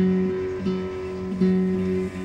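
Acoustic guitar and electric keyboard playing a slow instrumental passage, with held notes that change about every three-quarters of a second.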